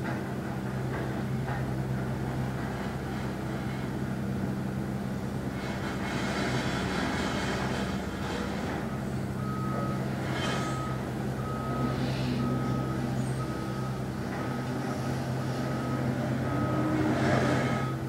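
A vehicle reversing alarm beeping evenly, about twice a second, starting about nine seconds in. Under it runs a steady low engine drone with a few passing swells of hiss.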